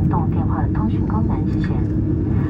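Steady low rumble of a jet airliner's engines and cabin heard from inside the cabin while it taxis, under a voice on the cabin PA.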